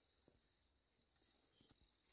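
Near silence, with a few faint ticks of a hoe blade striking dry soil, one early and two near the end.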